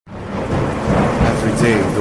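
Thunderstorm sound effect: steady rain with low rumbling thunder, starting abruptly at the opening of a produced radio intro. A voice comes in near the end.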